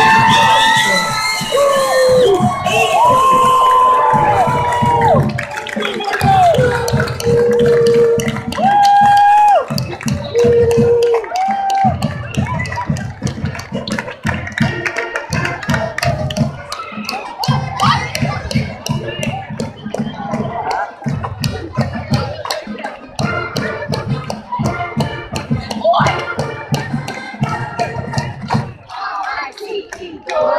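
High school marching band playing: held brass notes over steady drumming for about the first twelve seconds, then a drum-led stretch of rapid, even strokes with brass underneath. Crowd chatter and cheering mix in.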